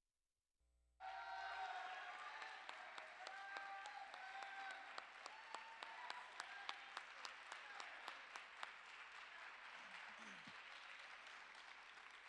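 Audience applauding with some cheering voices, starting abruptly about a second in and slowly tapering off.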